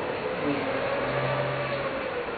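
Steady background rumble and hiss, with a low steady hum joining about a second in, like vehicle traffic heard from indoors.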